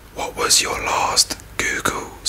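A man whispering, with sharp hissing sibilants.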